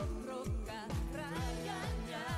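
A woman singing a pop ballad live with a wavering vibrato, backed by a band with a steady kick drum beating about twice a second.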